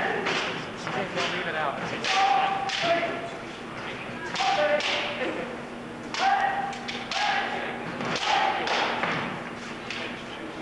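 Kendo bout: bamboo shinai cracking against each other and against armour, with repeated sharp knocks and thuds. Short, loud, held vocal shouts come about every one to two seconds, the fighters' kiai.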